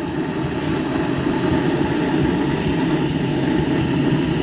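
Hand-held propane torch burning steadily, its flame giving a constant low rushing noise.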